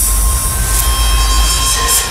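Low rumbling drone under a steady high hiss, with a faint held tone: a dramatic underscore sound effect.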